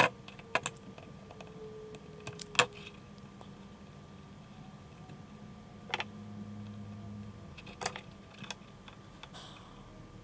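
Scattered light clicks and taps from hands handling a small plywood speaker housing with its wires, mini speakers and amplifier board. A cluster of clicks comes in the first three seconds, single ones about six and eight seconds in, and a short scrape near the end.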